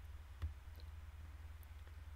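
A single computer mouse click about half a second in, over a low steady hum.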